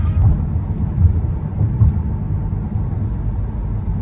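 Car heard from inside its cabin: a steady low rumble of engine and road noise.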